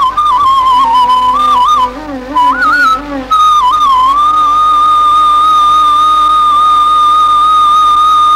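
Indian bamboo flute playing a melody with quick ornamental bends between notes, then, about three seconds in, settling into one long steady high note.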